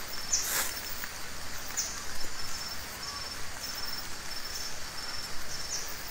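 Forest insects chirping in a steady, high-pitched pulsing trill. There is a brief rustle of brush about half a second in.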